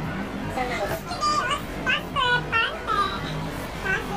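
A young girl talking in a high-pitched voice in short phrases.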